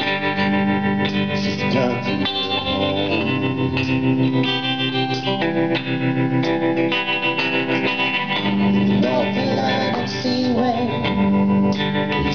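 A live country-blues band playing: guitar over bass guitar and a drum kit, steadily.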